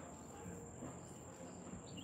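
Faint, steady high-pitched chirring of crickets, with a short chirp near the end.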